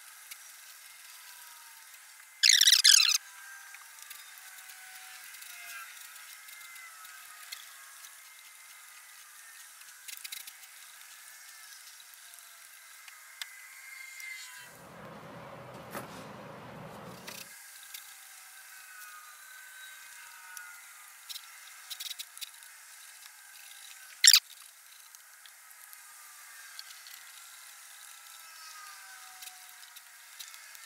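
Hand trigger spray bottle spritzing liquid: one longer spray about two and a half seconds in and one short, sharp spritz near the end. A muffled low rumble lasts about two seconds midway.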